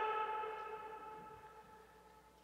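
A public-address loudspeaker ringing on at one steady pitch with overtones after a shouted phrase, fading away over about two seconds.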